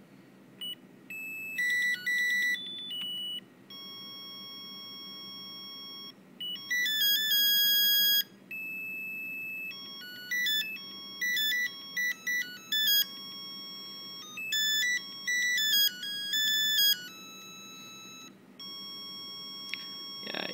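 The FPGA board's buzzer playing a programmed melody as a single line of electronic beeping notes, some short and quick, some held for a second or more, with brief gaps between phrases.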